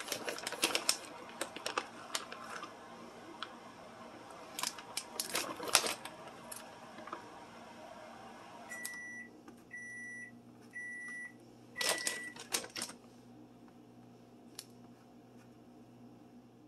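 Plastic bag of shredded mozzarella crinkling and rustling as cheese is sprinkled into a mug. Just past halfway, four short high electronic beeps about a second apart, then another brief rustle.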